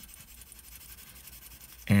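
Faint scratching of a colored pencil shading on drawing paper, with a man's voice starting near the end.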